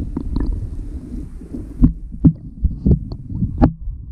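Low, muffled water noise heard through an underwater camera housing as it is swept along a gravel and cobble streambed, with a handful of dull knocks in the second half as the housing bumps the stones.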